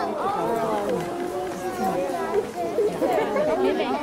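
Chatter of several people talking at once, overlapping voices with no single clear speaker.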